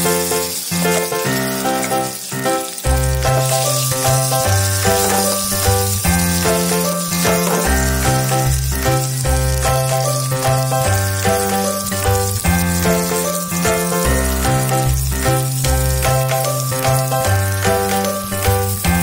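Background music with a repeating bass line, over the steady hiss of masala-coated prawns sizzling as they shallow-fry in oil in a pan.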